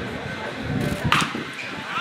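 A single sharp impact about a second in, the pitched baseball striking, over spectators' chatter and calls.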